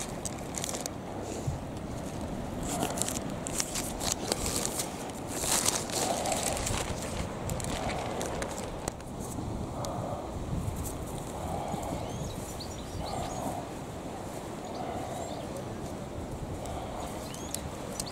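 A small zip-lock plastic bag crinkling as it is handled, over a steady rush of outdoor air. In the second half a soft sound repeats about every second and a half.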